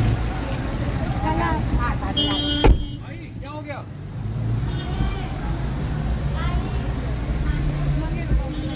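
A steady low rumble of rain and street traffic with voices. About two and a half seconds in, a car door slams shut, the loudest sound in the stretch, and the sound goes briefly duller and quieter, as if heard from inside the car.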